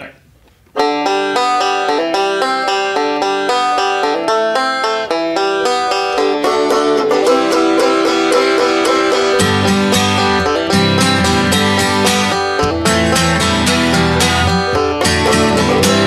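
Banjo and acoustic guitar begin an instrumental intro, the banjo picking quick plucked notes over strummed chords; a lower part fills in about halfway through.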